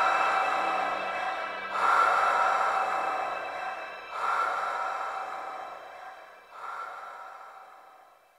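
Electronic soundtrack closing out: four breathy swells of noise about two and a half seconds apart, each starting abruptly and fading, over a faint held high tone. The whole sound dies away near the end.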